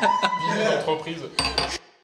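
Tableware clinking, several sharp chinks and clatters with voices in the room, a louder flurry near the end before the sound cuts off abruptly.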